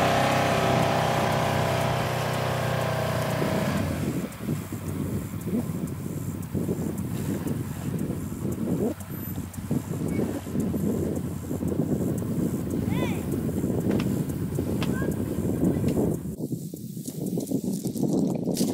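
A utility vehicle's engine running hard as it tows a rope, then dropping away about four seconds in. After that comes a lower outdoor rumble with a few short high chirps.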